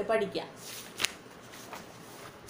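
Paper rustling as it is handled by hand, with one sharp click about a second in.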